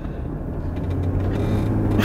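Car driving noise from inside the cabin: a steady low engine and road rumble that grows a little louder through the moment.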